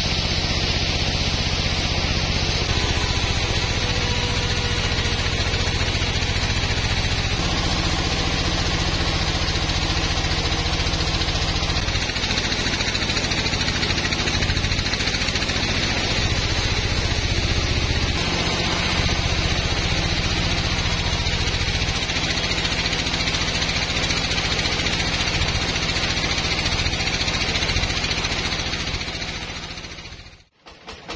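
Band sawmill running steadily, its blade cutting lengthwise through a teak log: a low machine hum under a steady sawing hiss. The sound fades out near the end.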